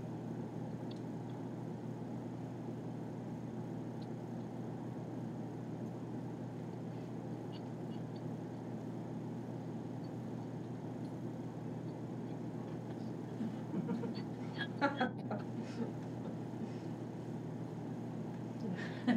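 Steady low hum of room or line noise, with no clear music coming through. A few faint short noises come near the end.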